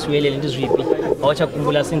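A man talking steadily.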